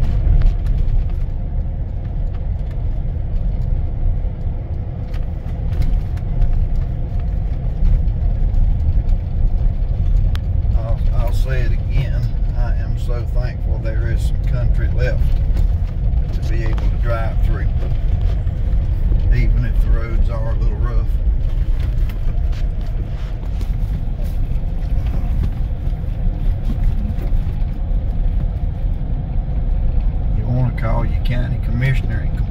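Car driving along a country road, heard from inside the cabin: a steady low rumble of road and engine noise.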